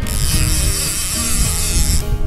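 Conventional fishing reel's drag running steadily as a hooked king mackerel pulls line against it.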